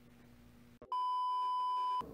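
Near silence, then an electronic beep: a single steady high tone that starts suddenly about a second in, holds for about a second and cuts off abruptly.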